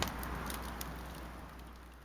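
Faint background noise with a low rumble and a few light clicks, fading out steadily.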